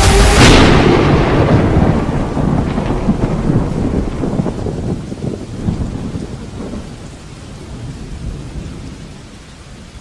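Thunderstorm: a loud thunderclap about half a second in, then a rolling rumble with rain that slowly fades away.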